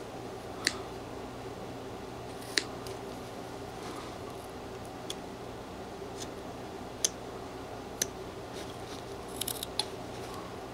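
Small whittling knife cutting into a hand-held wooden figure: a handful of sharp clicks as the blade snaps through the wood and pops off chips, a second or two apart, with several close together near the end, over a steady low hum.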